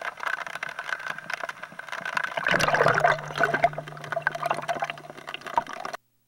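River water sloshing and wet gravel rattling on a wire-mesh sifting screen as it is shaken, a dense patter of small clicks that grows louder about halfway through. A steady low hum joins at the same point.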